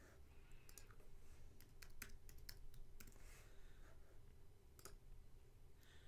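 Faint computer keyboard keystrokes and mouse clicks: a quick run of clicks in the first three seconds and a single click near five seconds, over a faint steady low hum.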